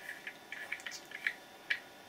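A few faint, scattered clicks and small taps from handling a 3D-printed travel cap ring on a T4E X-Tracer 68 paintball tracer.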